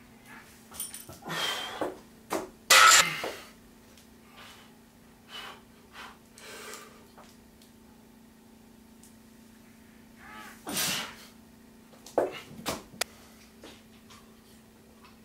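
A weightlifter's sharp, forceful exhales while squatting a heavy barbell, the loudest about three seconds in and another near eleven seconds, then a few short metal clanks shortly before the end as the bar goes back onto the rack.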